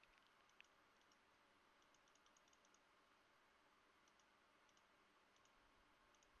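Near silence: room tone with faint, scattered clicks of computer input in small clusters, one a little sharper about half a second in.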